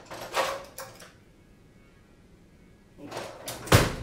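Someone rummaging for a screwdriver: a short clatter, a quiet pause, then more rummaging that ends in one loud, heavy thump near the end.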